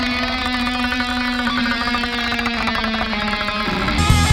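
Distorted electric guitar played live through an amplifier, holding long sustained notes that step slightly in pitch, the last one dropping away just before the end.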